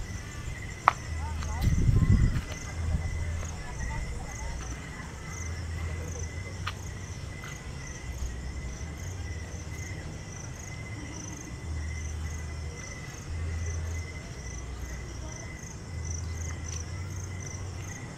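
Crickets or similar night insects chirping in the trees: regular high-pitched pulses with a steady high trill, over a low rumble that comes and goes.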